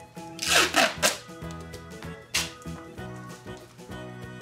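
Black adhesive tape pulled off its roll in two ripping strokes, a longer one about half a second in and a shorter one past two seconds, over background music.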